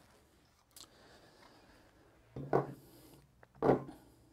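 Handling noise from a 3.5-inch hard disk and its ribbon cable being moved and stood upright on a wooden surface: a faint click, then two short rubbing knocks in the second half.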